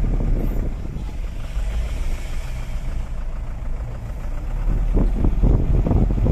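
Engine and road noise heard inside a moving vehicle's cabin: a steady low rumble.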